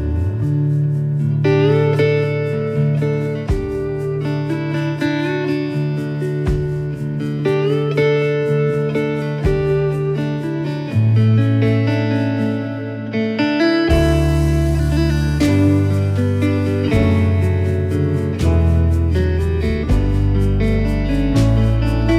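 Wooden lap steel guitar played with a slide bar, its melody notes gliding up into pitch. A band with piano and drums plays underneath it.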